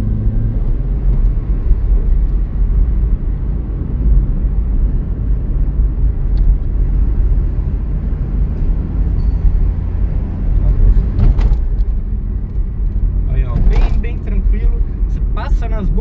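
Inside the cabin of a Chevrolet Celta's 1.0-litre engine car on the move: a steady low engine hum with road rumble. Brief voices come in near the end.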